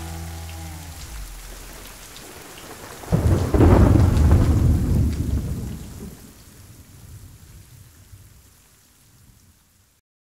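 Steady rain, then a loud clap of thunder about three seconds in that rolls on and slowly fades away over the next several seconds. The last of the song's music fades out just at the start.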